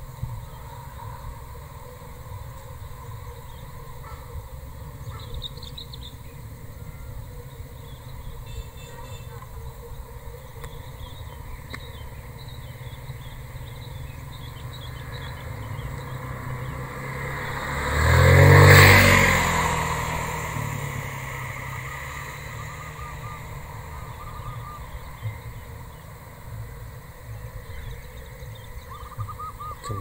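A motor vehicle passes close by: its engine swells from faint, is loudest about two-thirds of the way through, and fades away over a few seconds. Under it runs a steady low rumble.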